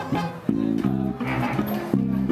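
Two double basses playing together, one bowed and one plucked, in a rhythmic line of short low notes.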